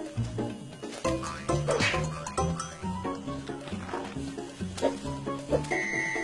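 A tiger snarling and growling over background music with a stepping melody.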